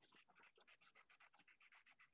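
Near silence, with only very faint repeated ticks.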